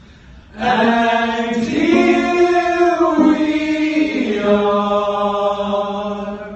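A group of men's voices singing together, holding long sustained chords. The chord comes in after a brief pause, moves to new pitches a few times and fades near the end.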